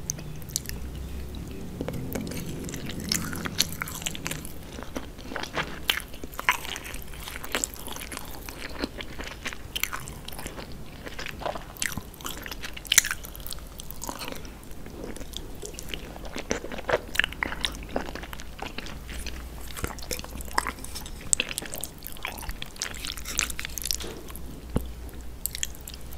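Close-miked chewing and mouth sounds of someone eating jajangmyeon, noodles in black bean sauce, heard as a steady run of short, irregular clicks and smacks.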